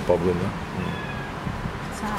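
A domestic cat meowing briefly.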